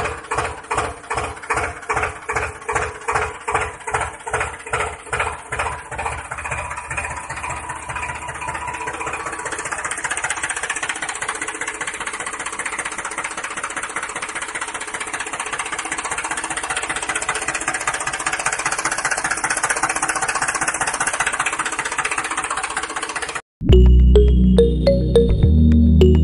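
Tractor engine chugging in slow, even beats about two and a half a second, then picking up into a steady run that slowly grows louder.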